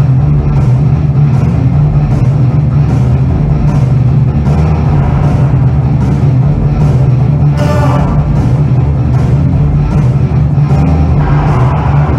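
Theatre orchestra playing a dark, loud passage from the musical's score, built on a heavy, sustained bass and a regular percussion beat.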